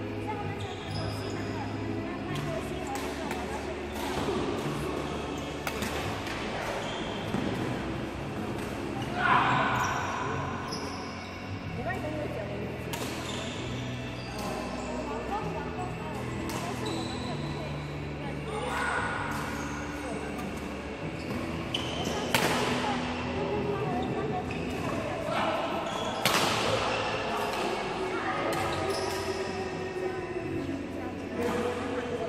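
Badminton rackets hitting shuttlecocks, a running series of sharp smacks at uneven intervals, with background voices in a large, echoing sports hall.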